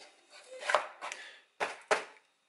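Cardboard pizza boxes being handled: a short rustling scrape about a second in, then a sharp knock on a closed box near the end.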